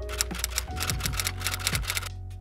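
A rapid run of typewriter-like key clicks, used as a sound effect, over background music.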